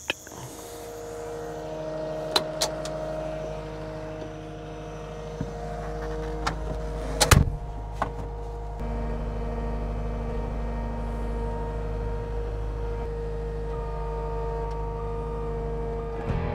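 Skid steer engine running at a steady speed with a hydraulic-like hum, punctuated by a few sharp metallic knocks, the loudest about seven seconds in.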